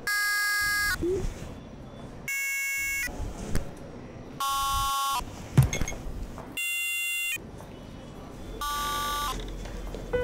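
Five short electronic buzzer tones, each under a second, spaced about two seconds apart and alternating between a higher and a lower pitch. Between them come a few small clicks, the sharpest a clink about halfway through.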